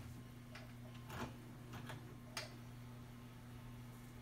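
Mitsubishi VHS VCR fast-forwarding a tape: a faint, steady low hum from the running transport, with four light clicks in the first half.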